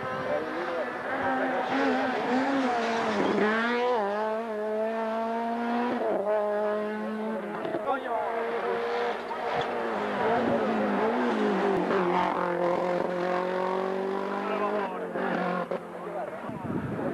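Rally car engine revving hard through the gears, its pitch climbing and then dropping back at each shift, several times over.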